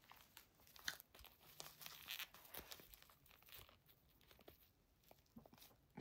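Near silence with faint rustling and a few small clicks, mostly in the middle seconds, from hands handling a fashion doll and its clothes.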